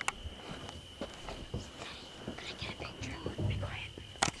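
People whispering, with scattered light clicks and a steady high-pitched tone underneath.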